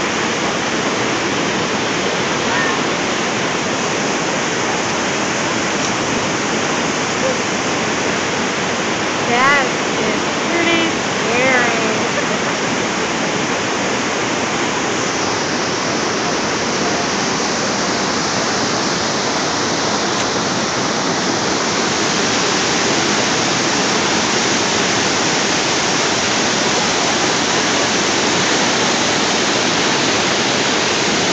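Steady roar of Niagara Falls, a dense, even rush of falling water. A person's voice calls out briefly a few times about ten seconds in.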